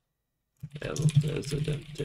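Rapid typing on a computer keyboard: a quick run of keystrokes that starts about half a second in.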